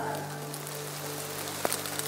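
Steady rain falling in a forest, an even patter, with one louder drop about a second and a half in.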